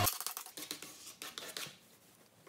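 A sticker being rubbed and pressed down onto a wooden tabletop: a run of light, scratchy clicks that thin out toward the end.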